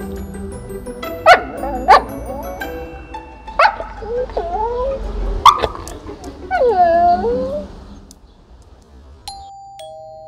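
A Siberian husky "talking": a string of short whining, woo-woo vocalizations that bend up and down in pitch, the longest about six and a half seconds in, over soft background music. Near the end a doorbell chimes a two-note ding-dong, the second note lower.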